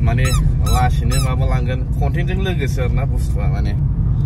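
Steady low road-and-engine rumble inside a moving car's cabin, with a voice making short, high, wordless pitched sounds over it.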